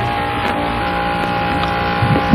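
Steady hum with a constant thin whistle tone running under it: the background noise of an off-air AM radio recording, heard with no voice on it.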